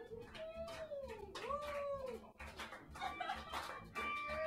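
Electric blues guitar lead played with wide string bends: long notes swoop up and sag back down, two or three arching phrases over the drums and band.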